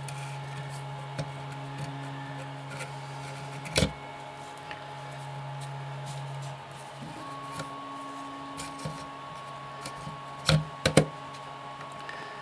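Light clicks and knocks of a lens barrel's metal and plastic parts being handled during reassembly: one about four seconds in and two close together near the end. Behind them runs a faint sustained low tone that changes pitch about seven seconds in.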